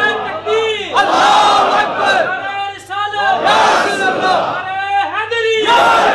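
A man reciting Punjabi devotional verse (kalam) in a loud, impassioned voice through a PA system, in drawn-out rising and falling phrases with short breaks between them.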